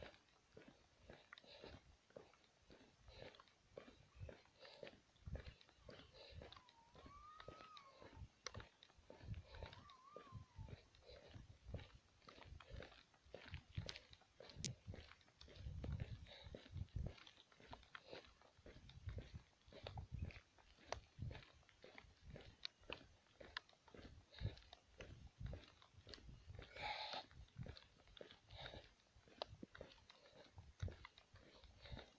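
Faint, irregular rustling, clicks and soft thumps of a phone being handled and moved in the dark. Two brief faint whistle-like chirps rise and fall about seven and ten seconds in, and there is a short louder burst near the end.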